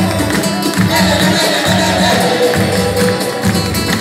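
A live samba band playing: a steady drum beat with hand percussion and plucked strings.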